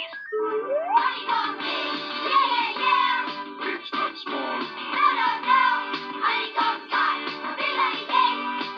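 TV commercial jingle: upbeat backing music with sung vocals, opening with a single rising slide in pitch about half a second in.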